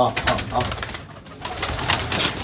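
Pigeons' wings flapping in a rapid run of sharp beats as several birds take off from the loft one after another.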